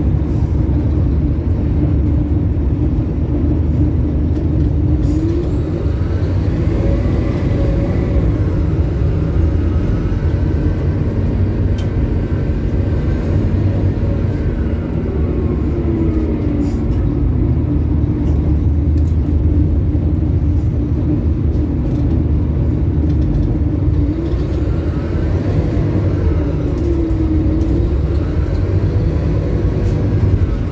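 Scania K280UB city bus's rear-mounted five-cylinder diesel engine and road noise heard from inside the passenger cabin while under way. A steady low rumble runs throughout, with an engine note that rises and falls in pitch several times.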